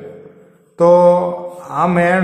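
Speech only: a man narrating in Gujarati, drawing out single words in a long, even-pitched voice.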